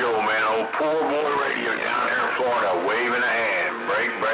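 A voice coming over a CB radio's speaker.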